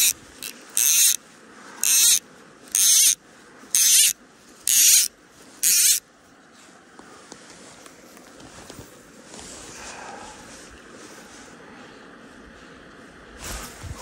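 Fly line being stripped in by hand close to the microphone: seven short, high-pitched pulls about a second apart, stopping about six seconds in, after which only a faint steady background remains.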